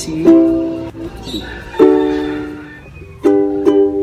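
Ukulele strummed in A minor and C chords, with a strong strum about every one and a half seconds that rings and dies away before the next.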